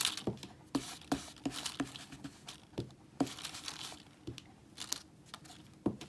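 An ink blending tool dabbing and rubbing pink ink through a plastic stencil onto card, making irregular soft taps, two or three a second, with crinkling of the stencil sheet and one louder tap near the end.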